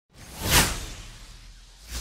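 Whoosh sound effect: a swelling rush of noise that peaks about half a second in and fades away slowly, then a second, shorter whoosh near the end.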